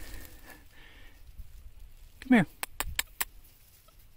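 A man's short, wordless falling call to a puppy about two seconds in, followed by a quick run of about six sharp clicks.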